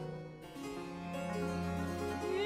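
A baroque period-instrument orchestra with harpsichord continuo plays a quiet instrumental passage of an opera, with no voice. Low sustained bass notes and chords enter about half a second in.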